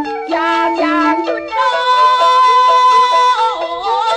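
Beiguan luantan music: a melody of quick changing notes, then a long held high note from about a second and a half in.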